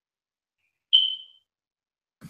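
A single short, high electronic ping about a second in, dying away within half a second in otherwise dead silence, like a computer notification chime.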